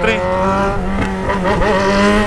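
Yamaha XJ6's 600 cc inline-four running at a steady, nearly constant pitch through a bare 3-inch exhaust pipe with the muffler removed, very loud while the bike is ridden.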